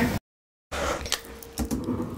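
A brief dead-silent gap, then scattered soft clicks and light knocks of something being handled close by in a small room, with a faint steady hum underneath.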